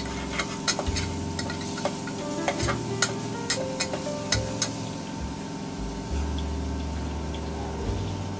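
Metal ladle stirring in a steel pressure cooker pot, clinking and scraping against the metal in a quick run of sharp clicks that thins out after about five seconds. Under it is the steady sizzle of masala frying in a kadhai.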